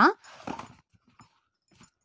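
A short breathy rush of noise, then a few faint ticks of a pen marking notebook paper.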